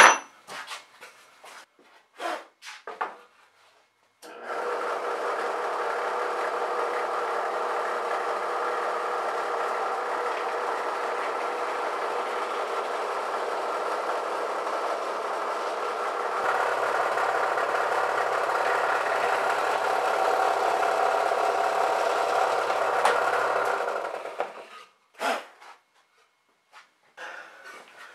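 Benchtop drill press motor running steadily for about twenty seconds while drilling holes into a pine block, growing a little louder about two-thirds of the way through. A few short knocks come before it starts and just after it stops.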